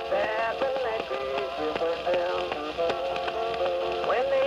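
A late-1920s Edison Blue Amberol cylinder record playing an old-time country song on an Edison cylinder phonograph. It has the thin, narrow-range tone of an early acoustic recording, with faint surface hiss.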